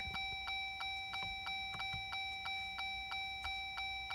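Steady rapid ticking, about five ticks a second, over a faint steady high tone.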